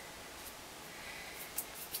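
Quiet room hiss with a few faint light clicks near the end, as small items are handled by hand.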